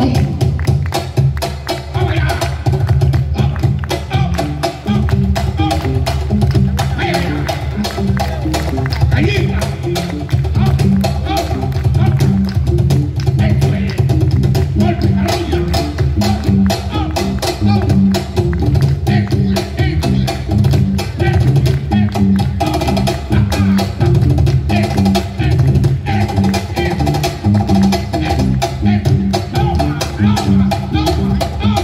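Live Afro-Peruvian tondero: a cajón keeps a driving rhythm under guitars, with hand clapping.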